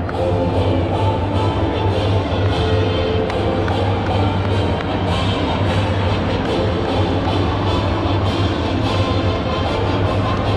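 Music with a steady drum beat and a strong, steady bass.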